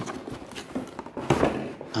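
Cardboard box being handled and shaken upside down, with a scuffing rustle and a couple of sharp knocks about a second and a third in as its contents shift.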